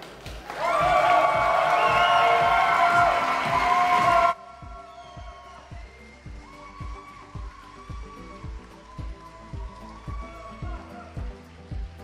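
Audience applauding and cheering for about four seconds, then cut off suddenly, leaving background music with a steady beat.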